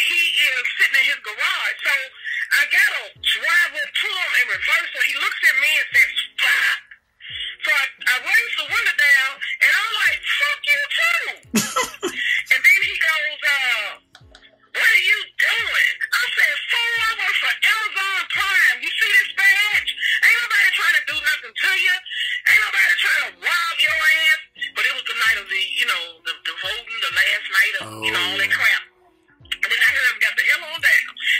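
Voicemail speech with the thin, narrow sound of a phone line, over background music with a deep beat about once a second.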